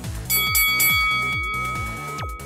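Electronic dance music with a fast steady beat; about a third of a second in, a bright bell-like chime rings out over it and slowly fades, the timer signal for the end of the exercise interval. A rising sweep follows near the end.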